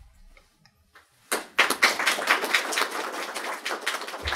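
A small audience applauding, starting about a second in.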